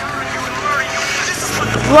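City street traffic: cars and trucks passing on the road, with a low engine hum coming up near the end as a vehicle drives by.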